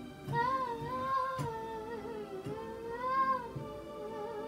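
A woman singing a long, wavering phrase of gospel melody over sustained electronic keyboard chords, with soft regular low thumps under it.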